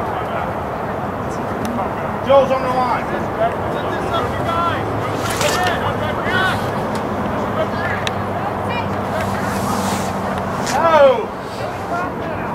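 Scattered distant shouts and calls from players and spectators across a soccer field over a steady outdoor background, with one louder call near the end.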